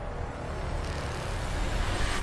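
Film trailer soundtrack: a steady low rumble with a hiss over it, and no voices.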